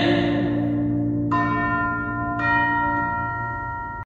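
A held low organ chord fading away, with two bell strikes about a second apart that ring on over it.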